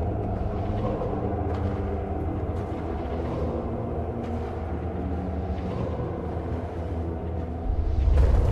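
Film soundtrack: a steady low rumble under a sustained drone of layered tones, swelling louder just before the end.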